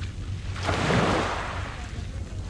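Wind rumbling on the microphone over the wash of small waves on a gravel shoreline, swelling louder about half a second in and easing off again.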